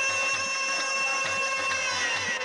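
Qawwali music: a long held chord over a steady, quick drum beat of about five strokes a second.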